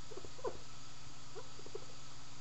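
Dry-erase marker squeaking faintly on a whiteboard in a few short strokes, about half a second in and again near the middle, over a steady low hum.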